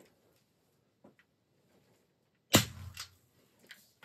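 An AEA HP Max .357 PCP air rifle firing a single shot: one sharp report about two and a half seconds in, with a short ringing tail.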